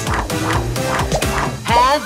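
Children's cartoon background music, with a string of short, pitched cartoon cries that bend up and down over it and a rising sweep near the end.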